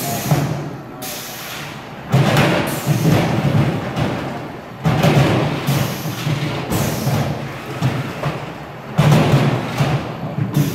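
A FIRST robotics competition robot stacking plastic recycling totes. A heavy, booming thud comes every few seconds as a tote drops or is lifted into the stack, each one ringing out and dying away, with the loudest hits about two, five and nine seconds in.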